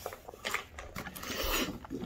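Faint rustling and crinkling of a plastic toy blind-bag package as it is handled, a little louder in the second half, with a few small clicks.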